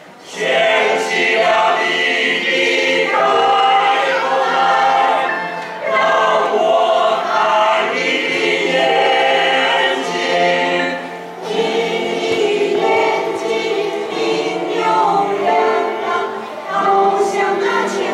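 Mixed choir of women's and men's voices singing a song in Chinese in several parts, phrase after phrase, with brief breaks between phrases about six and eleven seconds in.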